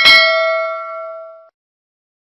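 Subscribe-animation notification bell sound effect: a click, then a bright bell ding of several ringing tones that fades and cuts off about a second and a half in.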